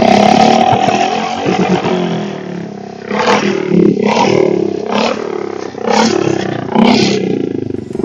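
Custom bobber motorcycle's 350 cc engine revving through twin aftermarket silencers. High revs at first sink over about three seconds, then five quick throttle blips follow about a second apart.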